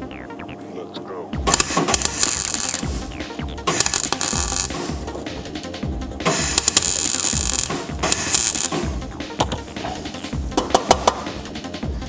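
MIG welding in short bursts, tack-welding a repair stiffener into a rusted car sill: four crackling bursts of about a second each, then a few brief crackles near the end.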